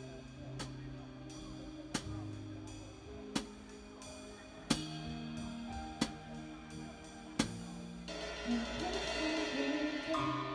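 Drum kit played along to a backing track with held bass notes: sharp accented drum-and-cymbal hits about every second and a half, then near the end a dense cymbal wash building into a fill.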